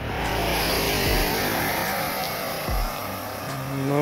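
A vehicle passing on the road, a steady rushing noise, with a few low wind buffets on the microphone.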